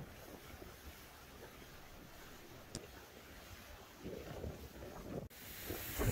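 Faint wind and water noise from a cabin cruiser under way on the river. A little before the end it changes abruptly to louder wind buffeting the microphone.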